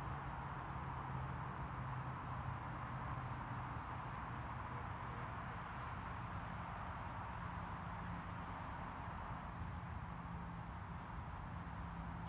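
Steady outdoor background noise: an even hiss with a low continuous hum underneath, and a few faint high ticks in the middle.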